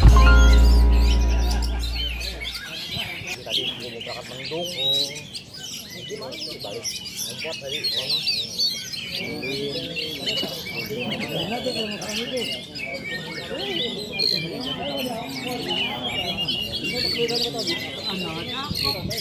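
Oriental magpie-robins (kacer) singing, with several birds' quick whistles and chirps overlapping, over voices in the background. A low music note fades out in the first two seconds or so.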